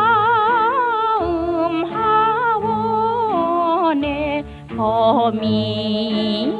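A woman singing a 1930s Korean popular song with wide vibrato over small-orchestra accompaniment, played from an old 78 rpm record.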